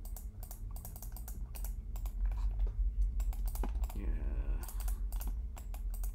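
Irregular clicking of a computer keyboard and mouse while the software is worked, many small taps in quick succession over a low steady hum.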